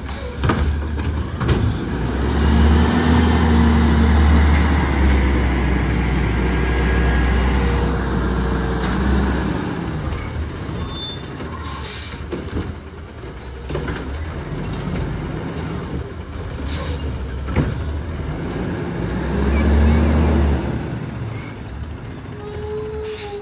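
Autocar ACX garbage truck with a Heil front-loader body and Curotto-Can arm: a few metallic clanks as the cart arm comes down, then the truck's engine revs up and holds for several seconds to drive the hydraulics. It then pulls away, with short air-brake hisses and another engine rev near the end.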